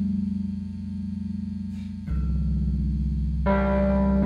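Live band instrumental: held electronic keyboard chords over a deep bass note that drops lower about two seconds in. Electric guitar notes join about three and a half seconds in.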